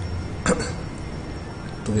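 A man's short, sharp vocal noise, a quick catch in the throat, about half a second in, over a steady low hum.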